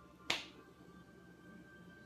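A single sharp click about a third of a second in, over faint steady tones.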